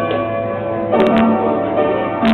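Piano being played: ringing sustained chords, with new chords struck about a second in and again just after.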